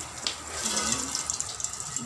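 Water spraying from a hose onto wooden louvered doors, a steady hiss and spatter, wetting the caked dust to soften it before it is scrubbed off.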